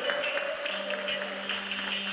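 Live-looped music played back from a loop pedal: a rhythmic clicking beat of about three to four strokes a second under a held tone, with a second, lower held note coming in under a second in.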